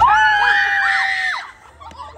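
Two or more young women screaming together in fright, startled by a man hidden in a bush costume. It is a loud, high scream held for about a second and a half that then breaks off into quieter voices.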